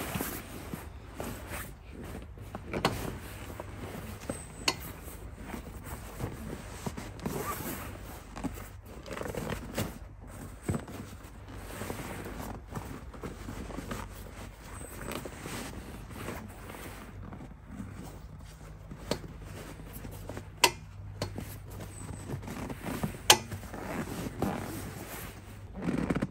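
A fabric seat cover being pulled and tugged over a vehicle's rear bench seat: rustling cloth with scattered knocks and sharp clicks, the loudest click about three seconds before the end.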